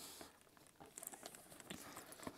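Near silence with faint, scattered light clicks and rustles from a leather drumstick bag being handled.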